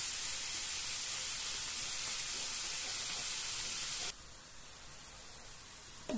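Sliced onion and red and green peppers sizzling in olive oil in a frying pan as they soften, a steady hiss that drops suddenly to a fainter hiss about four seconds in.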